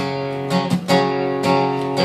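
Steel-string acoustic guitar strummed, the chords ringing between strokes, with a quick run of strums near the middle.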